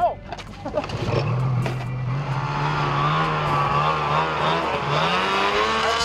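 Snowmobile engine revving as the sled pulls away across the snow. Its pitch climbs from about a second in, dips briefly near five seconds and rises again.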